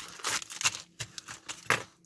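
Plastic mailer packaging crinkling and rustling as it is cut open and small foil anti-static bags are tipped out onto a cutting mat, with a few light, sharp taps as they land.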